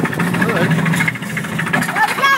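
Roller-coaster chain lift hauling the train up the lift hill: a steady drone with a fast, even rattle of the chain.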